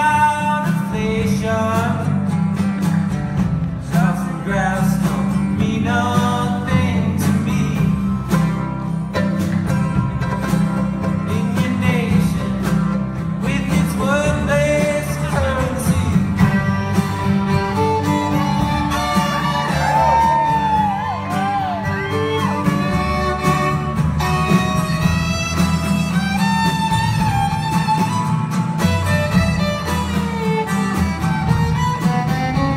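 Live folk band playing: a bowed violin carries the melody over a strummed acoustic guitar and a steady low bass line.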